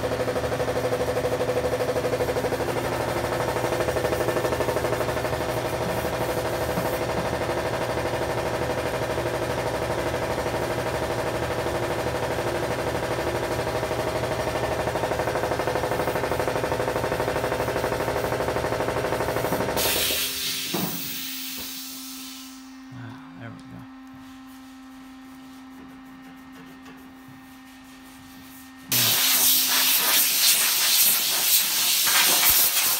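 A steady machine drone with a low hum, which winds down about twenty seconds in and leaves only a faint hum. A loud hissing rush starts suddenly just before the end.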